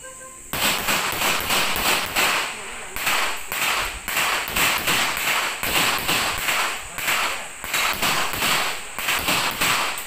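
Rapid handgun fire: a long string of shots, about three a second, starting suddenly about half a second in.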